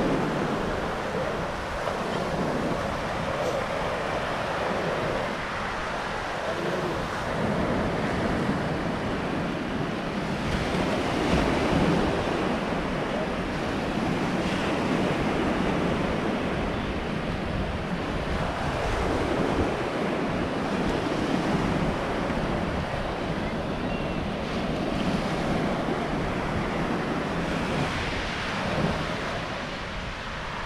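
Small surf breaking and washing up a sandy beach, the wash swelling and fading every few seconds, with wind buffeting the microphone.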